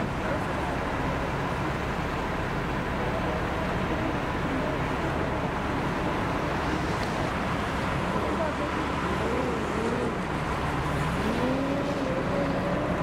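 Armoured military vehicles driving slowly past on a wet road, engines running over steady traffic noise. A pitched note rises and falls near the end.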